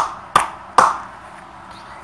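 Three sharp hand slaps in quick succession within the first second: one hand striking the other.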